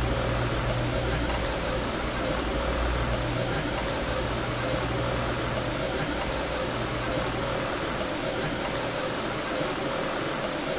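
Steady hiss from a Wyze home security camera's own audio track, with a faint steady tone and a low hum underneath.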